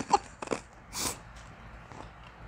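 A laugh trails off, then someone bites into a crunchy spiced snack chip, with a short crisp crunch about a second in.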